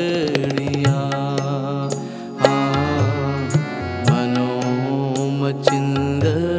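Harmoniums holding sustained reedy chords in a kirtan instrumental passage, with tabla strokes on top, including low bass strokes that bend in pitch.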